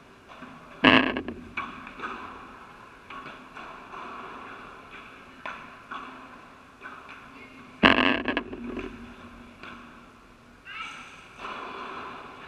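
Padel rally: a ball struck by rackets and bouncing off the court and glass walls in an echoing indoor hall. Two loud, sharp racket hits, about a second in and again about eight seconds in, ring on in the hall, with quieter ball knocks between.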